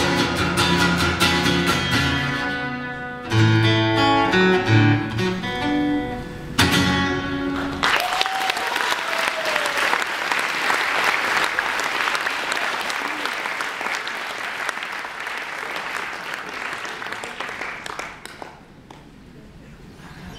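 A steel-string acoustic guitar plays the closing bars of a song, with strummed chords about three and a half and six and a half seconds in, and the last chord rings out about eight seconds in. Audience applause follows and slowly dies away near the end.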